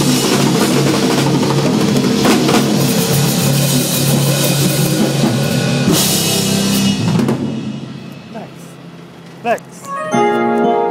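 A live band led by two drum kits plays a gospel song, with a cymbal crash about six seconds in. The band stops on a final hit about seven seconds in and rings out. A brief rising sound comes near the end.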